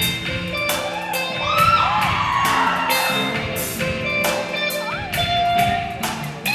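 Live band playing, led by an electric guitar solo of bent, wailing notes over a steady drum beat and sustained backing chords.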